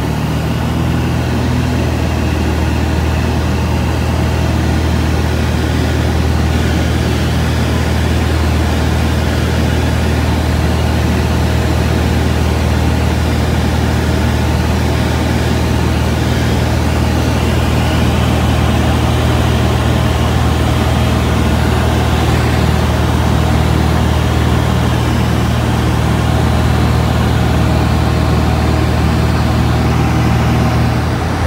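Van's RV-10 light aircraft's piston engine and propeller running steadily in cruise, a loud, even low drone heard inside the cabin.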